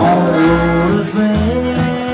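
Live country band music: a bass plays a line of separate notes under a melody that bends up and down.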